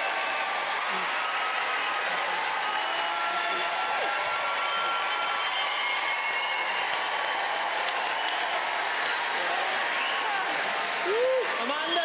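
Large theatre audience applauding steadily in a standing ovation for a singer. A voice comes in over the applause near the end.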